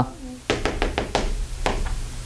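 Chalk tapping against a blackboard in a quick series of sharp knocks, about six or seven a second, as dots are struck onto the board.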